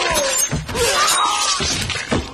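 Knives slashing throats, heard as sharp, harsh crashing and slicing noises, with a short laugh near the start.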